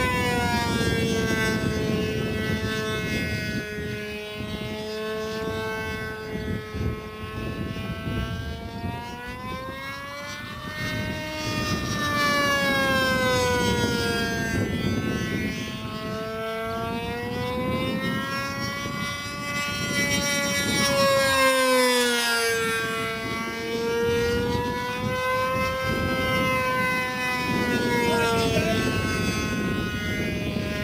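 Motor and propeller of a radio-controlled GeeBee profile 3D model plane droning overhead in flight, one continuous note whose pitch slowly swings up and down as it flies.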